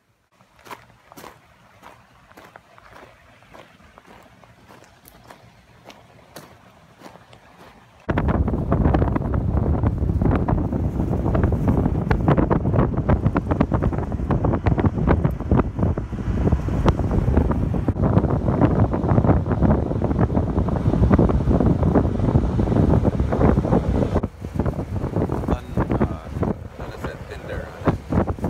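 Faint, with a few soft clicks, then about eight seconds in a sudden loud rush of wind buffeting the microphone while riding in the open back of a moving vehicle, mixed with road noise, easing briefly near the end.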